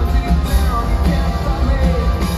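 Live rock band playing: a drum kit and guitar, with a heavy, booming low end.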